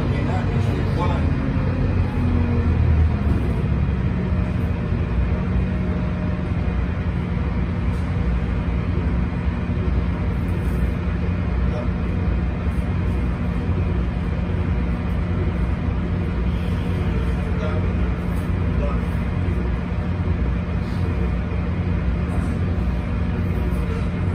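Otokar Kent C18 articulated diesel city bus heard from inside the passenger cabin. The engine drone falls in pitch over the first few seconds as the bus slows, then settles into a steady idle hum while the bus stands still.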